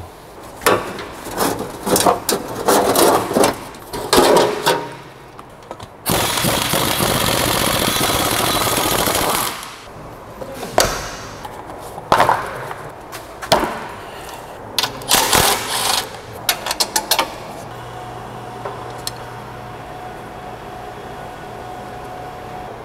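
Under-car suspension work: clusters of metal tool clicks and knocks, then a power tool runs loudly for about three and a half seconds. Scattered knocks and clunks follow as the rear stabilizer bar and its link are handled, then a quieter steady hum.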